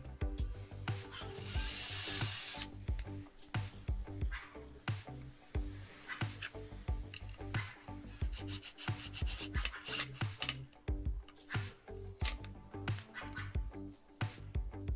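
Cordless drill boring into pallet wood, with one loud burst of drilling about a second and a half in that lasts about a second, then scattered knocks of the wood and tool. Background music plays underneath.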